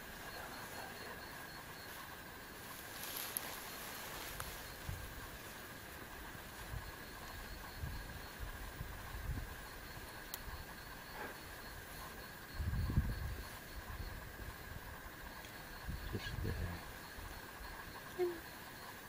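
Outdoor night ambience: a steady high-pitched chorus of calling insects with a faint regular pulsing, broken by a few low rumbles, the loudest about thirteen seconds in and again around sixteen seconds.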